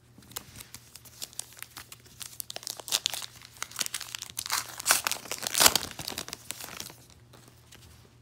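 A trading-card pack's crimped wrapper being crinkled and torn open by hand: a run of crackling and ripping, loudest about five and six seconds in, that stops about a second before the end.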